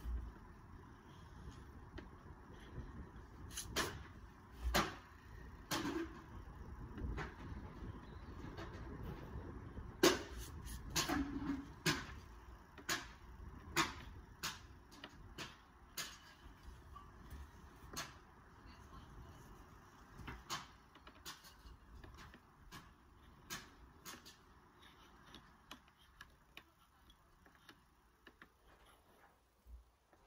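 Shave hook scraping lead sheet at the joint around the base of a pipe sleeve, in irregular short strokes and clicks, cleaning the lead ready for lead welding. The strokes thin out over the last few seconds.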